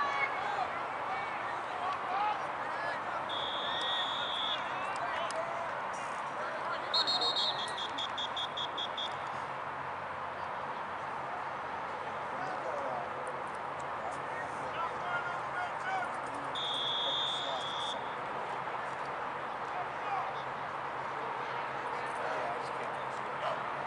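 Sideline chatter and crowd voices murmuring at a football field, with referee's whistle blasts: a short blast about 3 seconds in, a rapid trilled series of pulses about 7 seconds in, and another blast of over a second near 17 seconds.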